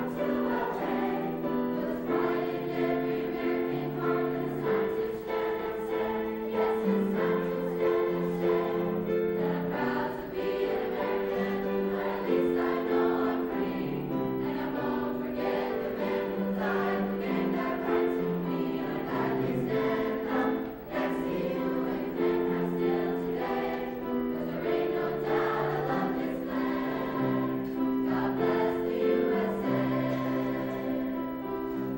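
Mixed choir of teenage voices singing in harmony, holding long chords that change every second or two, with a short break for breath about two-thirds of the way through.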